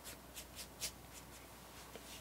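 Faint scratchy strokes of a nearly dry watercolour brush skimmed across the paper to lay grass texture, a few quick strokes in the first second.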